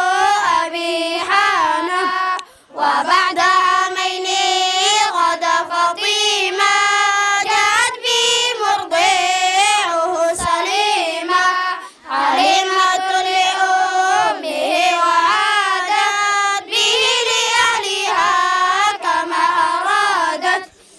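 A group of children chanting an Arabic devotional poem in unison, a melodic sung recitation in long phrases with short breaks about two and a half and twelve seconds in.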